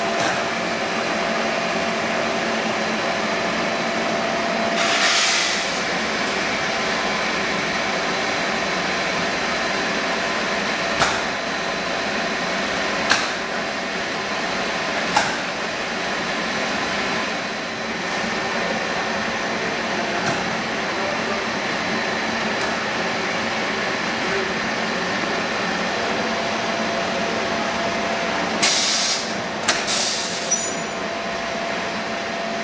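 Machinery of a plastic pipe production line running with a steady hum and several fixed whining tones. A short hiss comes about five seconds in and again near the end, and three sharp clicks come in the middle.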